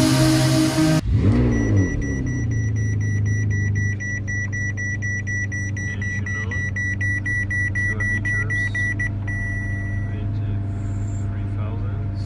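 Ferrari 599 GTB's V12 starting about a second in, flaring up, then running at a fast idle that settles at around four seconds. A high electronic warning chime beeps rapidly from the dashboard for most of this time and stops near the end.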